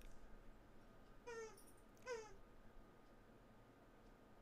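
A dog whining twice in short, faint, high squeaks, each falling in pitch, about a second apart. It is a restless dog that its owner says needs a walk.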